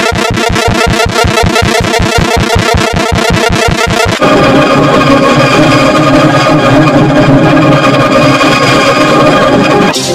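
Heavily distorted, effects-processed logo music. A buzzy chord pulses rapidly for about four seconds, then gives way to a dense, sustained electronic chord.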